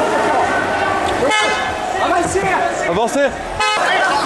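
Two short horn toots, about a second in and again just before the end, over the shouting and cries of a street crowd. A sharp click comes a little after three seconds.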